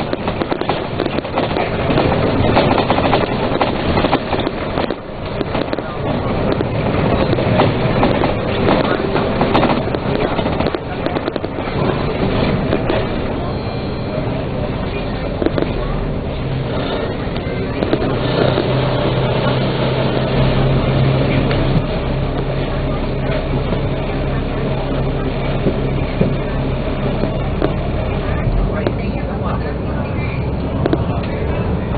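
Dennis Trident double-decker bus in motion, heard from inside: the diesel engine runs with constant rattling and knocking of the bodywork, and voices murmur in the background. Past halfway the rattling thins and a steady low engine hum holds.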